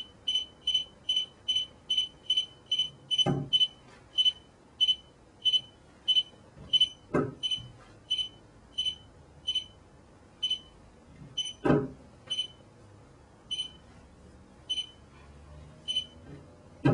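A short, high electronic beep repeats about twice a second, then slows to about one beep every second or two from about four seconds in. Over it come four knocks as a mobile phone is set down on a wooden board.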